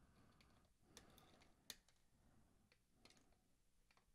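Near silence with a few faint, sharp clicks: side cutters snipping the freshly soldered diode leads short on a circuit board.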